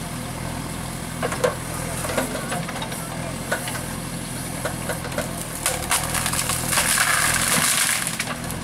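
JCB backhoe loader's diesel engine running steadily as its backhoe arm pushes into bush, with repeated sharp cracks of branches snapping. A louder stretch of noise comes near the end.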